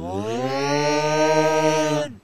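A loud, deep, sustained yell from an alien-like puppet creature. It rises in pitch over the first half second, then holds one steady 'aaah' for about two seconds and drops off at the end.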